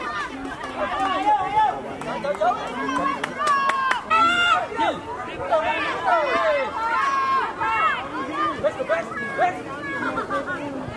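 Many high-pitched voices shouting and calling over one another during a children's football match, with one loud shout about four seconds in.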